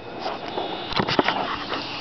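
High-voltage arc drawn out long from a flyback transformer driven by a ZVS driver, hissing with irregular crackles and a few sharper snaps about a second in.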